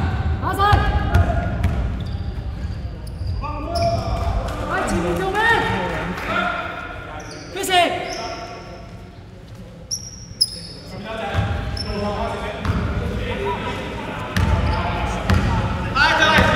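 A basketball being dribbled on a hardwood gym floor, its bounces echoing through a large sports hall, with players shouting over it.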